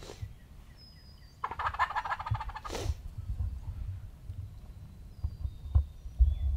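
A wild turkey gobbling once, about a second and a half in: a rapid rattling call lasting about a second, followed at once by a short rushing whoosh. Faint small-bird chirps are heard before and after it.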